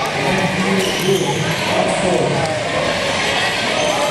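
Several voices of coaches and spectators calling out over one another, with a few knocks mixed in.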